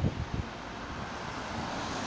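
A car passing on a wet road, its tyres hissing on the water, over steady wet-road traffic noise. Wind buffets the microphone with a few low thumps at the start.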